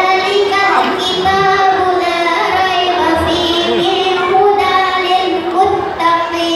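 A child's voice singing a slow melody in long held notes that step up and down in pitch.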